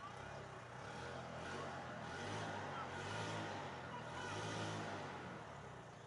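A motor vehicle passing close by, its engine and tyre noise swelling over a couple of seconds, holding, then fading away.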